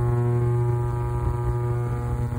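Ultrasonic cleaner running with a variable tuning capacitor in its detergent-water bath: a steady, loud buzzing hum with many overtones.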